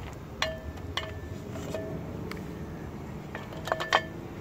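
Steel brake shoe clinking against a new brake drum as it is set into place, the drum giving short metallic rings. Two single clinks come about half a second and one second in, then a quick cluster of clinks near the end as the shoe is seated.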